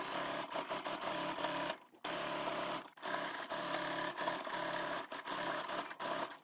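Baby Lock Sofia 2 sewing machine running a zigzag stitch, stopping briefly about two seconds in and again about a second later, with short pauses near the end as the fabric is guided forward and back.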